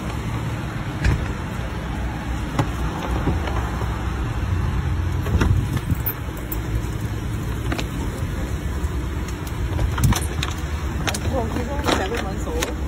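Steady low rumble of a motor vehicle, with scattered sharp clicks and knocks, and faint voices near the end.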